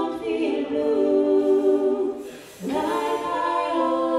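A woman singing held notes without accompaniment through a PA system during a soundcheck, with a short break for breath about halfway through.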